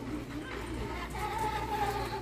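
Faint store background music over a steady low hum, with a single held high note coming in about a second in.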